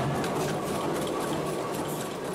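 Mechanical power hammer striking a sheet-iron wok blank in fast repeated blows: a steady, rapid metallic clatter as the iron is beaten out into a wok's rounded shape.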